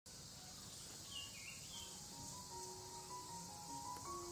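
Faint outdoor ambience: a steady high insect drone with a bird chirping a few times about a second in. From about two seconds in, quiet music of slow, held notes comes in.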